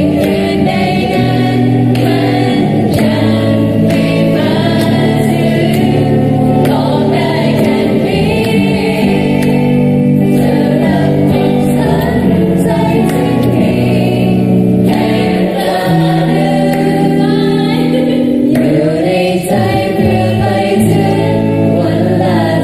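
A group of young voices singing a slow, sentimental song together in chorus, with long held notes, accompanied by an electric guitar.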